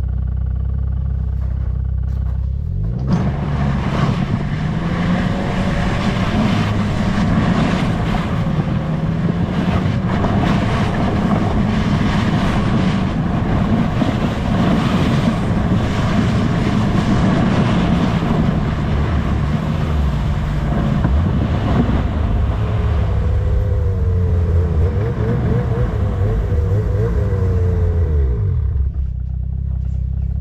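Snowmobile engine idling, then pulling away about three seconds in and running under load while towing a loaded freighter sled, its pitch rising and falling with the throttle. It settles back toward idle near the end.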